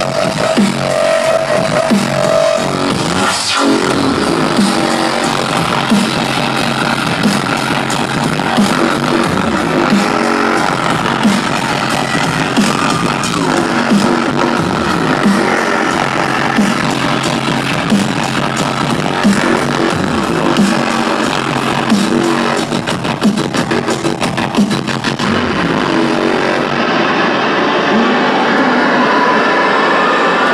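Loud electronic bass music from a DJ set played over a concert PA, with repeating wobbling bass figures and a rapid stuttering roll between about 22 and 25 seconds in.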